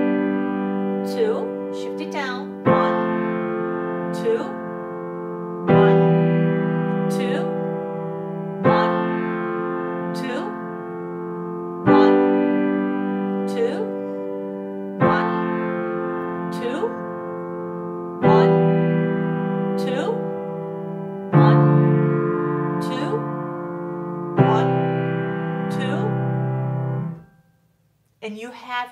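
Piano playing a slow series of three-note chords in the bass, one about every three seconds, each held by the sustain pedal so it rings on unbroken into the next: legato pedalling, with the pedal changed at each chord. The ringing cuts off suddenly near the end.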